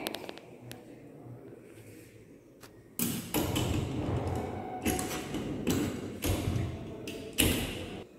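Metal door of a laboratory hot air oven shut with a thud about three seconds in, followed by several knocks and rattles as its latch handle is worked.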